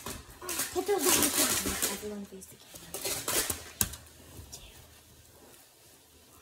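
Plastic building tiles clacking together several times as children handle them, with quiet children's voices in the first couple of seconds; it grows quiet toward the end.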